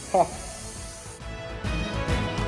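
Steady hiss of compressed air from a paint spray gun's airline, with a short falling voice sound just after the start. The hiss stops suddenly about a second in and background music takes over.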